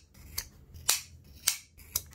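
Scissors snipping at a costume's harness strap: four sharp snips, about half a second apart.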